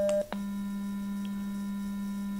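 Computer-generated test tone. A third-degree Fourier approximation of a square wave, a low tone with its third harmonic, cuts off about a quarter second in with a brief gap and a click. A pure cosine tone at the same low pitch then holds steady and smooth.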